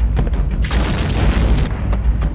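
Deep explosion booms over a continuous low rumble, with a loud blast that roars for about a second in the middle.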